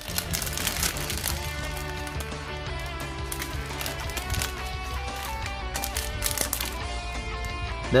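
Background music with steady held notes that change every second or so. Over it comes the light crinkle of a clear plastic parts bag being handled, heard now and then.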